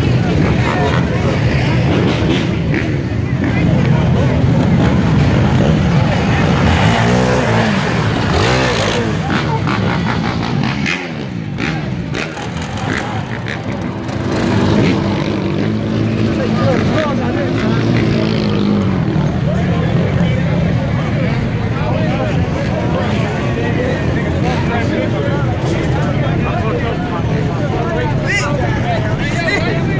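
Motorcycle and sport-quad engines running and revving, their pitch sweeping up and down several times, over a crowd's voices.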